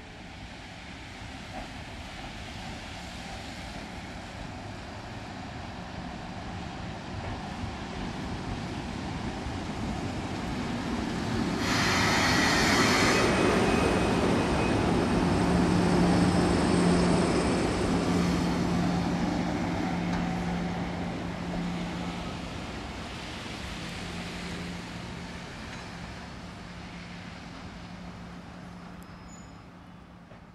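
JNR Class EF65 electric locomotive (EF65-1105) running past. It grows louder as it approaches, with a short harsh burst about twelve seconds in. A steady low hum follows as it draws alongside, and the sound fades as it moves away.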